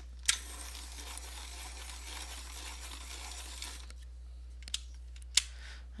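Pencil sharpener grinding a Giorgione coloured pencil: a click, then about three and a half seconds of steady shaving, then two sharp clicks near the end. The sharpener is struggling with the pencil's first cuts.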